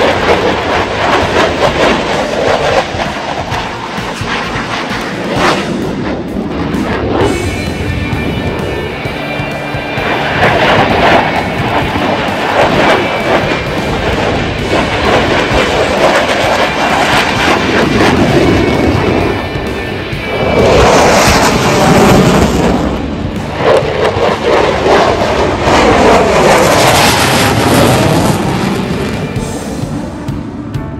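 F-16 fighter jet engine roaring as the aircraft flies a display overhead, swelling loudest twice in the second half as it passes, with background music laid under it.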